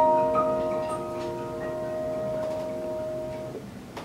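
Grand piano chord held and ringing out, slowly dying away, with a couple of soft higher notes added in the first second or so. The ringing fades out shortly before the end.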